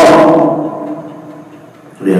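The end of a man's chanted Arabic Qur'an recitation: a held sung note fades away with echo over about a second and a half.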